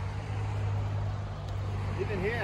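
A steady low engine hum, like a vehicle running nearby, over a noisy outdoor background.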